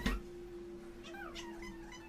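An infant's brief, faint, high-pitched coo or squeal about a second in, its pitch rising and falling, over a steady low hum.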